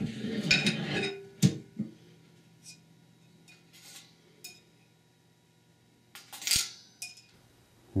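Steel transmission parts clinking and rattling as a Ford E4OD direct clutch drum is handled on and lifted off a spring-compressor foot press. There is a jangly clatter at first, a sharp metallic click about a second and a half in, a few light ticks, then a longer metallic rattle near the end.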